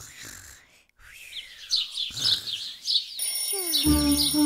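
Birds chirping as a cartoon morning sound effect, in quick repeated chirps. Music comes in near the end.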